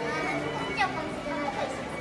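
Voices of people talking in the background, fainter than a close voice, with a thin steady high tone running underneath.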